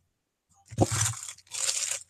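Rustling and scraping of things being rummaged through and handled on a desk. The sound comes in two short bursts starting just under a second in, after a brief moment of dead silence.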